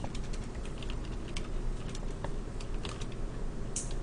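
Typing on a computer keyboard: a run of irregular, quick keystroke clicks.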